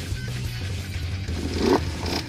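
A water-swamped ATV engine idling steadily, with a short rush of noise near the end as a jet of water is blown out from underneath the machine.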